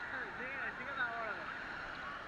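Voices of people in the sea, over a steady hiss of surf.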